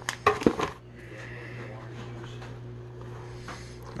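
A plastic dog-treat bag crinkling as it is handled, with a few sharp crackles in the first second, then a quieter stretch with only a faint steady hum.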